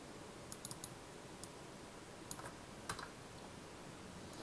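Sharp clicks from a computer mouse and keyboard: a quick run of four about half a second in, then single clicks spread over the next couple of seconds, over faint room noise.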